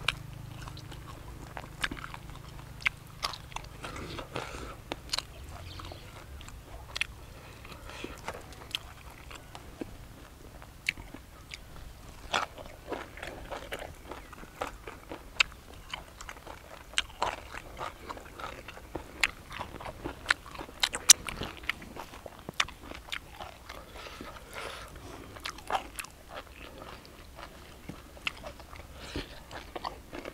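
Close-up chewing and crunching of grilled field rat, with many irregular sharp crackles as the meat is bitten and pulled apart.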